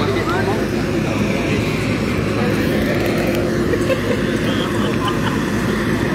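A steady low motor drone runs throughout, with people talking indistinctly in the background, most clearly near the end.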